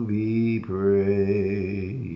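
A man singing a slow hymn alone, with no accompaniment. He holds two long notes with a brief break between them, about a third of the way in.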